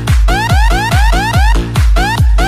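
Electronic club dance music: a steady kick drum about twice a second under short, quickly repeated rising synth notes that sound like an alarm.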